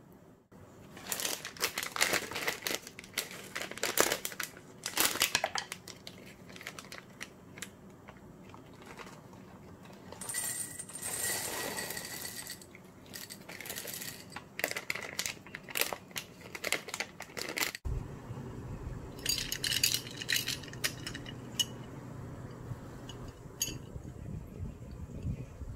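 Plastic snack bag crinkling and tearing open, then a stream of small hard Kkoedori snack balls poured rattling into a stainless-steel bowl, which rings faintly. After a change of scene, a low steady hum with a few scattered light clicks.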